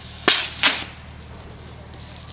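Compressed-air water-bottle rocket launching: two short, sharp bursts about a third of a second apart as the cork blows out of the pressurised bottle and the air and water jet out.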